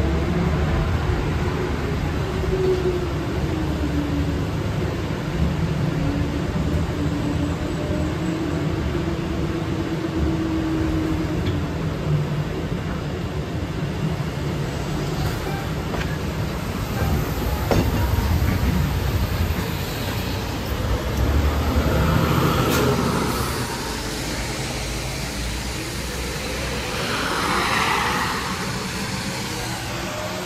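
2006 New Flyer electric trolleybus running, heard from inside: a steady road rumble with a faint motor whine that drifts in pitch. Later come swells of noise that fit tyres on wet pavement as the bus pulls away.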